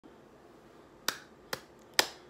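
A person clapping her hands: three sharp single claps about half a second apart, starting about a second in.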